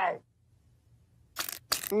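Two short, sharp noisy bursts close together about a second and a half in: a cartoon sound effect of a dental instrument being worked.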